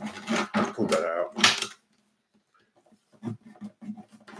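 Hands working on an acoustic guitar's body while the piezo pickup lead is fed through a drilled hole. A few brief vocal noises and scrapes come first, then about a second of silence, then a run of quick soft taps and clicks with a dull thud or two from the guitar body.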